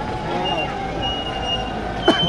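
Busy street ambience: distant voices mixed with vehicle noise, and a steady tone held through most of it.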